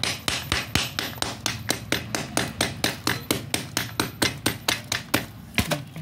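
A small hammer pounding pieces of soft black slate on a plastic sheet in quick, even strokes, about five a second, crushing them to powder. The strokes stop a little after five seconds in.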